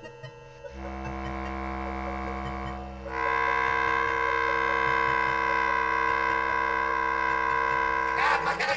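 Bass clarinet and live electronics sounding sustained, unchanging tones over a low drone. The sound enters about a second in, then swells louder and brighter about three seconds in and holds steady.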